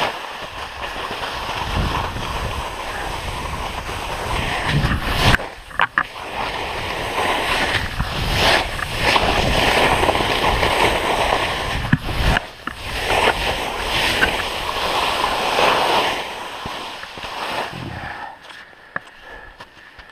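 Skis sliding and scraping down a snow slope, a rushing hiss that swells and fades with the turns, mixed with wind on the microphone and a few sharp clacks. It dies down near the end as the skier stops.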